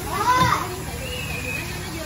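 A child's short, high wordless call that rises and falls about half a second in, followed by quieter background voices.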